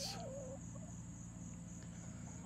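Faint, steady, high-pitched chirring of insects, typical of crickets. A brief wavering call sounds in the first half second.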